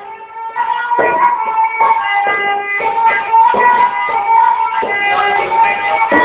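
Sarangi playing a sustained, wavering melody, with sharp rhythmic strokes from a plucked folk accompaniment (the bugdu) about twice a second.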